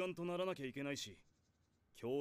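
Speech only: a male anime character's dialogue from the episode, stopping about a second in.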